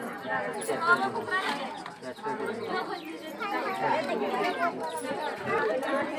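Chatter of a gathered crowd: many voices talking at once and overlapping.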